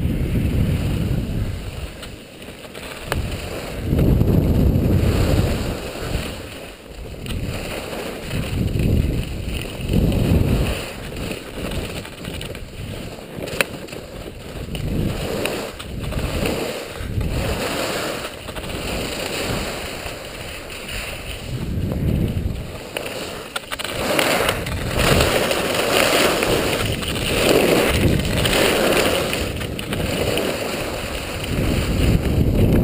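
Wind rushing over an action camera's microphone during a ski descent, swelling and fading every second or two with the hiss and scrape of skis turning on packed snow, growing louder and hissier near the end. One sharp click about halfway through.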